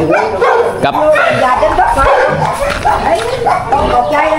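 People talking, with an animal calling among the voices.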